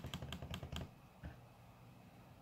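Computer mouse button clicked in a quick run on a settings spin-box arrow, stepping a value down; the clicks stop a little under a second in, leaving faint room noise.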